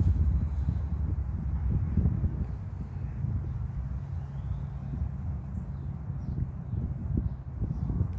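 Wind rumbling unevenly on the microphone, with many small irregular low thumps.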